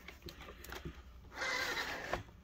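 Faint handling noise as a scale RC crawler truck is turned around by hand on a tabletop: a few light knocks, then a rubbing, scraping noise for about half a second near the end.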